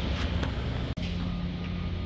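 Steady low mechanical hum of background machinery, broken by an abrupt cut about a second in, after which a steady low tone runs on over the rumble.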